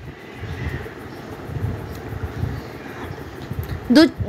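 Steady low rumbling noise with a faint hiss, swelling slightly over the first second or two.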